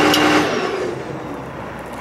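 Ford F-550 truck engine idling, then shut off from the remote stop button at the boom's upper controls about half a second in; the sound drops away and fades out.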